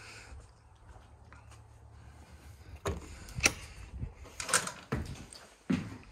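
An enclosed cargo trailer's side door being unlatched and opened: a low hum, then a series of sharp metallic knocks and clicks.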